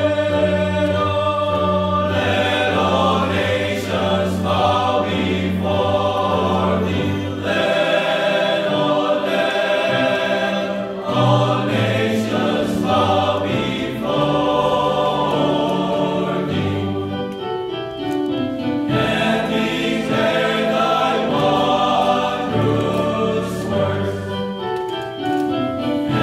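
Male choir singing in several-part harmony. A low bass note is held for about the first seven seconds, then the lower parts move in changing chords.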